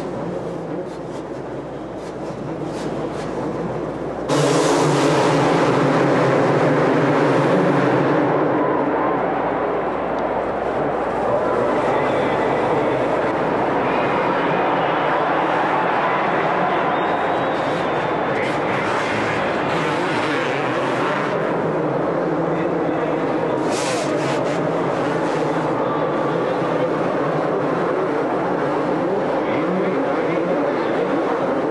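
A pack of two-stroke supercross motorcycles racing, their engines revving hard together. The sound steps up suddenly louder about four seconds in and stays at full throttle.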